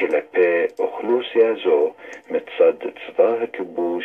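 A voice speaking Hebrew in a shortwave AM broadcast, played through a communications receiver's speaker, with the sound cut off above about 4 kHz.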